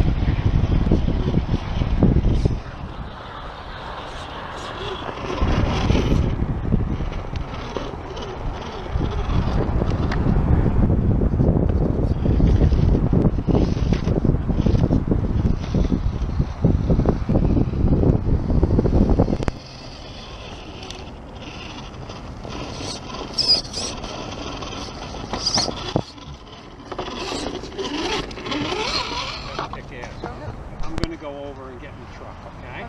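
Wind buffeting the camera microphone, a loud low rumble that comes in gusts and drops away sharply about two-thirds of the way through. Afterwards, scattered clicks and scrapes from the scale RC rock crawler working over the rocks.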